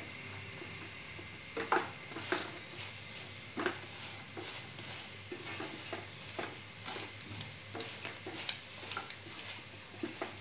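Idli pieces frying in oil in a kadhai with a steady sizzle, while a wooden spatula tosses them, scraping and knocking against the pan every second or so.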